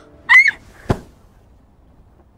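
A short, loud squeak that glides up in pitch and bends, followed about half a second later by a single sharp click.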